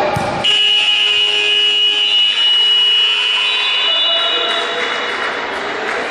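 Futsal timekeeper's buzzer in a sports hall sounding one long, steady, high-pitched tone that starts abruptly about half a second in and lasts around three seconds, signalling the end of a period of play.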